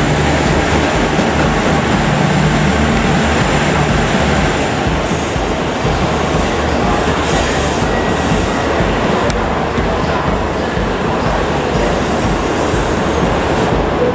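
KiHa 85 series diesel limited express train pulling out, its diesel engines running as the cars pass close by, with the steady noise of wheels on rail. The low engine hum fades about five seconds in, leaving wheel and rail noise.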